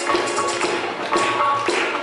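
Devotional jagran music: a dholak hand drum playing a tapping rhythm, with short electronic keyboard notes over it.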